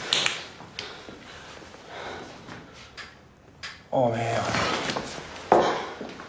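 A brief scuffle: clothing rustling and a few sharp knocks and clicks, then a man's voice for about a second near the end.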